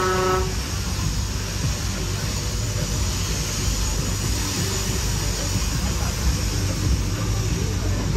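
A fairground ride's signal horn gives one short toot at the start, about half a second long. The jumping ride's machinery then runs on with a steady low rumble and hiss as the ride cycle ends.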